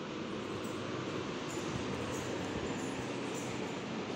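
Steady background noise, an even rushing hum with no distinct events.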